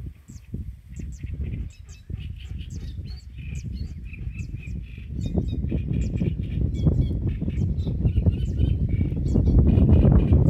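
Many small wetland birds chirping and calling over a low wind rumble on the microphone. The wind grows louder in the second half.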